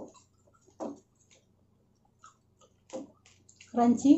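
Close-up eating sounds of a hand-fed meal of crispy fried pork belly and rice: a few short, wet mouth smacks and chews, with two brief voiced murmurs, the louder one at the end.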